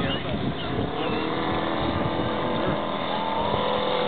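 Engine of a large radio-controlled scale Stearman biplane running steadily in a slow flyby, a droning note whose pitch shifts slightly upward near the end.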